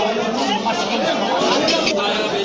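Several people talking over one another: the chatter of a busy market.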